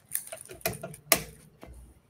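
A few light clicks and knocks from desk handling noise, with one sharper knock about a second in.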